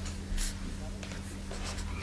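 Faint scratching of writing on a board or paper, a few strokes with the clearest about half a second in, over a steady low hum.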